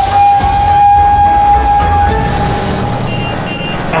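A steam locomotive's whistle blowing one long steady note as the train departs, strong for about two seconds and then fading, over a low steady rumble and hiss.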